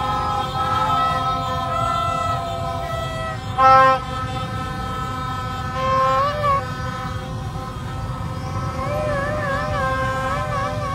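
Fans blowing plastic trumpets in a street crowd: several steady horn tones overlap, one short, very loud blast comes about four seconds in, and a repeated warbling horn call starts near the end. All of it sits over a dense low rumble of crowd and traffic.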